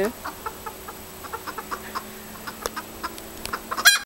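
Pekin bantam hens clucking as they forage: a scatter of short, soft clucks, then one loud, sharp call near the end.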